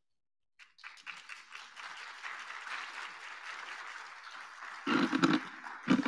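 Audience applauding, starting about a second in and running steadily for several seconds, with louder bumps near the end as the microphone is handled.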